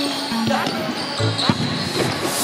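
A futsal ball is kicked on an indoor court, two sharp thuds about half a second and a second and a half in, under background music with held notes.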